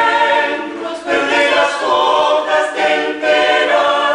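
Small mixed-voice vocal ensemble of men and women singing a cappella in held chords.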